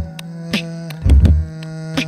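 Live beatboxing layered on a loop station: a steady hummed bass tone runs under beatboxed drum sounds, with a deep kick about a second in and sharp snare strokes about half a second in and near the end.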